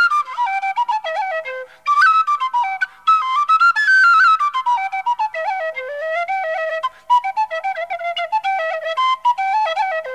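A single flute-family wind instrument playing a lively Irish traditional dance tune solo, quick ornamented runs of notes with a few brief gaps.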